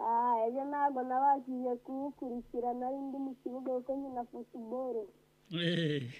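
A high-pitched voice singing a few short phrases of held, wavering notes, over a faint steady hum; it stops about five seconds in.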